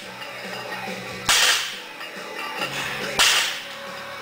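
Plate-loaded axle bar set down on the floor twice, about two seconds apart: each a sharp bang of iron plates landing, with a short ring-out. Background music plays throughout.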